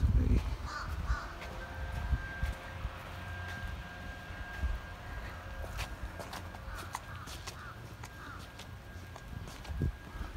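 A bird cawing several times, in short calls around a second in and again in a run near the end, over a low rumble of wind and handling on the microphone.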